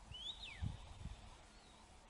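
A wild bird calling: one whistled note that rises and then sweeps down early on, and a fainter short call later, over low rumbles.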